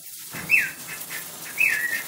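Cockatiel whistling two short notes: the first slides down, the second slides down and then holds briefly.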